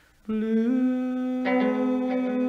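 Guitar playing in a 1950s blues song recording, after the singing has stopped. After a brief gap, a note is plucked and slides up in pitch, then holds; more notes are struck about one and a half seconds in.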